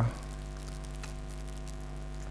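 Steady low electrical hum with a ladder of overtones, the background of the microphone's recording.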